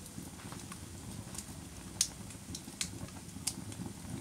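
Wood fire crackling in a wood-burning cook stove: sparse, irregular pops over a low, steady rumble.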